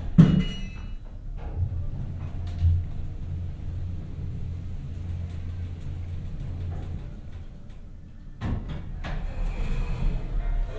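Otis Gen2 gearless traction elevator heard from inside the cab. A sharp thump right at the start as the doors shut. The car then runs down one floor with a low steady hum and a faint high whine, and the doors slide open about eight and a half seconds in.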